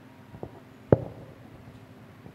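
A single sharp knock about a second in, with a few fainter knocks around it, over a steady low hum.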